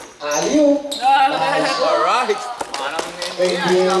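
Excited shouting and calling voices on an indoor basketball court, with a few sharp bounces of the basketball on the floor.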